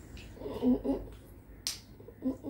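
Clear slime being worked in the hands. Two short, low pitched squelches come about half a second in, and a single sharp click or pop follows near the end.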